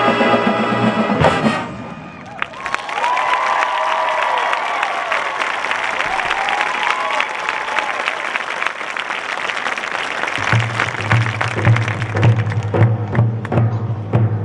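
A marching band's sustained brass chord cuts off about a second in, followed by several seconds of audience applause and cheering. Near the end the band comes back in with a steady low note under rhythmic percussion hits.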